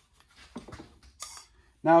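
Quiet shop with a few faint handling clicks and one short hiss as a handheld torch is brought up to a plastic fender liner; a man starts talking near the end.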